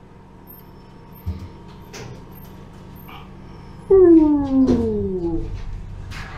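A loud, drawn-out animal cry about four seconds in, falling steadily in pitch over a second and a half, over faint background hum.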